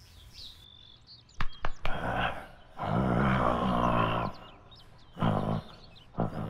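A man growling like an animal: a long, loud, pitched growl lasting about a second and a half in the middle, with a shorter one near the end. A few sharp knocks come just before it.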